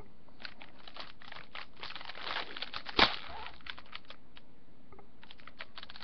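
Cookie package wrapper crinkling as it is torn open: scattered crackles, a denser rustle about two seconds in, and one sharp snap about three seconds in.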